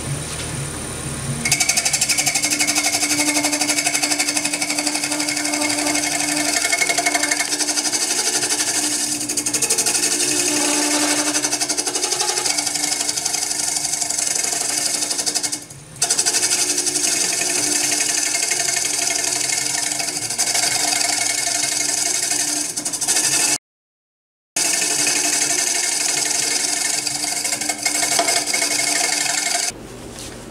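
Hollowing cutter scraping the inside of a spinning wooden hollow form on a lathe, played back sped up, which turns it into a rapid, high rattling chatter. It breaks off briefly twice, once about halfway through and again a little later.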